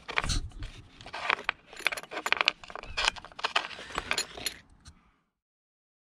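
Irregular small clicks and rattles of plastic and metal parts as a hand moves the servo linkage inside a 1/5-scale RC monster truck's chassis, stopping about five seconds in.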